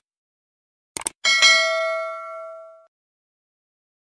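Subscribe-animation sound effect: a quick double click about a second in, then a single bright bell ding that rings out and fades over about a second and a half.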